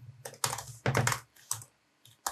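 Computer keyboard typing: a quick run of keystrokes entering an IP address, stopping about one and a half seconds in.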